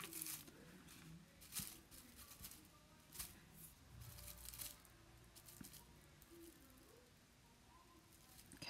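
Very faint rustling and crackling of dried straw being pushed into place and glued by hand, a few soft strokes spread out over the quiet.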